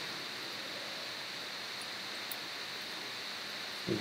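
Steady, even hiss of recording background noise, with no other sound.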